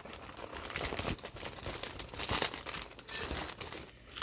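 Clear plastic packaging crinkling as it is handled and pulled open, an uneven run of crackles.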